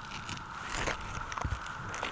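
Scattered scuffs and light clicks of footsteps on an asphalt-shingle roof, with camera handling noise, over a steady faint hiss.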